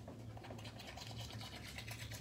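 Manual toothbrush scrubbing teeth: faint, quick, scratchy back-and-forth brushing strokes.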